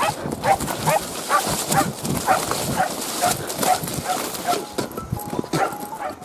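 Hunting dogs barking rapidly in the chase, about two to three barks a second, over a steady rustling hiss.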